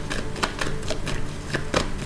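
Tarot cards being handled: irregular light clicks and snaps, several a second.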